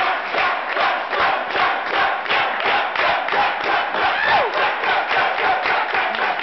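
A group of young people's voices chanting and shouting together in a fast, steady rhythm, pulsing about four times a second.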